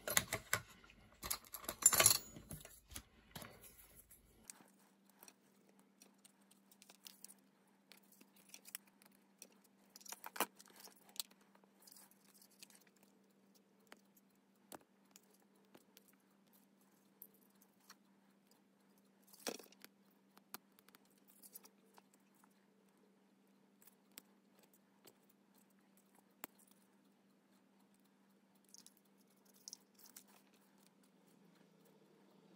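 Hands handling a small plastic blower fan and its rubber grommets, working them with a pick: a brief clatter in the first few seconds, then sparse faint clicks and taps. A faint steady hum comes in about four seconds in.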